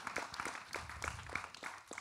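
Applause in a hall: scattered hand claps that thin out and fade near the end.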